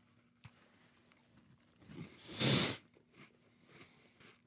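Two people biting into and chewing cumin biscuits close to their microphones, mostly quiet with faint small clicks. About two and a half seconds in there is one louder burst of hissing noise, half a second long.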